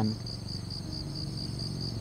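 Insects chirping: a high-pitched trill pulsing evenly about five times a second, in the pause between readings.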